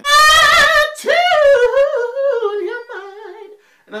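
A man singing a vocal riff: a loud, high held note with fast vibrato for about a second, then a run of quick notes winding steadily downward, growing softer before it ends.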